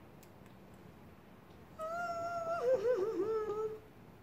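A house cat gives one long meow a little under two seconds in, lasting about two seconds. It starts level and then wavers and falls in pitch before it stops.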